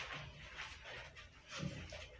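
Quiet shuffling footsteps of a man and a dog walking across a small room, with faint scuffs and clicks.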